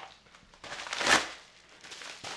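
A padded paper mailer being opened and its contents pulled out: a paper rustle that swells to a loud peak about halfway through, then fainter rustling.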